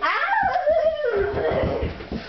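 A baby's long, loud squeal of laughter that leaps up in pitch at once and then slides down over about a second and a half, breaking into short breathy pulses near the end.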